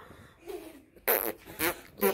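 Two short bursts of a child blowing a raspberry into cupped hands, the first about a second in and the second half a second later.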